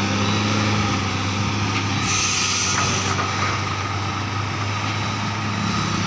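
Heavily loaded multi-axle goods truck's diesel engine running with a steady low drone as it passes close by. About two seconds in there is a second-long hiss of air, like the truck's air brakes releasing.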